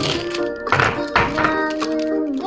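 Background music with a gliding melody, with two sharp knocks about half a second apart near the middle.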